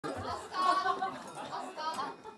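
Several people talking at once: audience chatter in a room.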